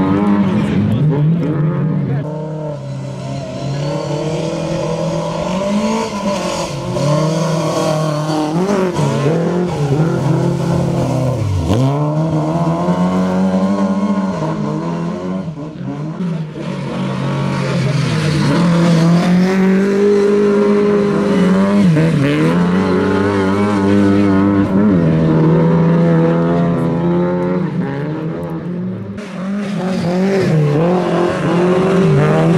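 Lada 2107 rally car's four-cylinder engine driven hard on loose dirt, its pitch repeatedly climbing under full throttle and dropping sharply at gear changes and lifts, several times.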